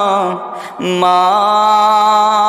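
Wordless sustained vocal humming in the interlude of an unaccompanied Islamic gojol. One held note slides down and stops, a short breath comes about half a second in, and a new note is then held steady.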